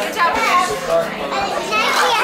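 Several children's voices talking and calling out over one another: excited classroom chatter.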